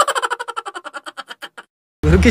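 An edited-in stuttering sound effect: a rapid train of repeated pulses, about twelve a second, dying away over about a second and a half and then cutting to dead silence.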